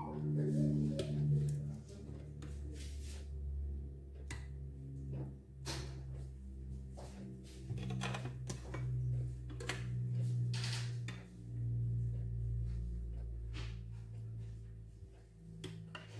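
Metal kitchen tongs clicking and scraping against a glass baking dish and a ceramic plate as sauce-coated chicken wings are lifted and dipped: a string of short, irregular clicks. Under them is a soft low tune.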